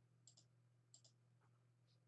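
Near silence: a faint steady low hum with two faint double clicks, less than a second apart.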